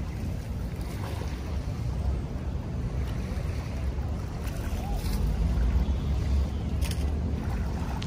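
Wind rumbling on the microphone over small waves lapping at the shoreline of a shallow, debris-choked bay, swelling a little in the middle.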